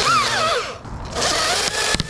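Husqvarna battery chainsaw cutting through a conifer branch: the motor's whine drops in pitch as the chain bites into the wood, eases off briefly about halfway, then the saw cuts again with a dense hiss of chain and chips.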